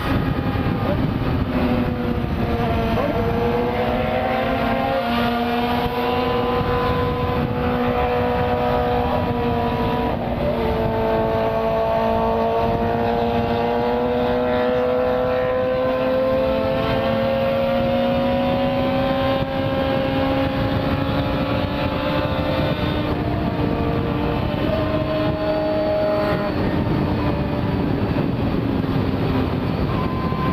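Yamaha FZ6's inline-four engine running at highway cruising speed, its note mostly steady with slow rises and falls in pitch as the throttle changes, under a rush of wind noise.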